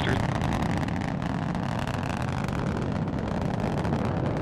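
Delta IV Heavy rocket's three RS-68 engines at full thrust during ascent, heard from afar as a steady, noisy low rumble.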